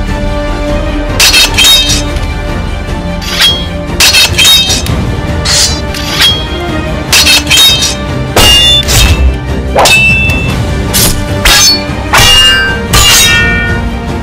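Swords clashing, about twenty sharp, ringing metal strikes in quick runs of two or three, over background music.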